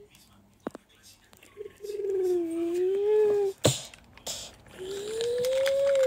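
A child's voice making drawn-out engine noises for a toy truck: one wavering hum, then a second that rises and falls in pitch. A sharp plastic click comes between them.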